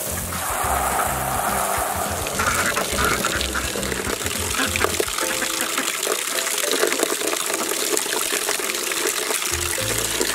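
Hose water splashing into a plastic tub and shallow pans, with ducks quacking, under background music.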